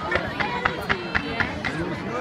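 Fireworks display going off in a rapid string of sharp bangs, about four a second. People are talking close to the microphone over it.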